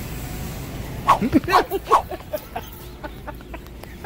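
A person's voice in a quick run of short, high-pitched bursts about a second in, trailing off into smaller ones, over a steady low background hum.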